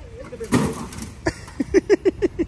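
A stack of paving stones dumped down, a brief crash about half a second in.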